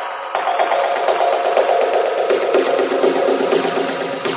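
Electronic techno music mixed live by a DJ, passing through an effect: the bass is cut away, leaving a dense, fast-repeating buzzing pattern in the mids, led in by a rising tone just before.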